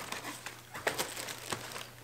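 Soft rustling and crinkling of tissue paper and honeycomb kraft packing paper as small cardboard soap boxes are pressed into a shipping box, with a few light clicks from the boxes being set down.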